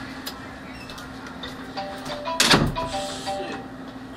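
A mobile phone playing a short run of electronic tones at a few different pitches, like a brief ringtone or alert melody, over a steady low hum. A loud thump, like the handset or microphone being knocked, cuts in about halfway through.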